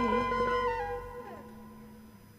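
Gambang kromong ensemble music coming to its end: a held, wavering melody note over the ensemble stops about a second in, and the music dies away.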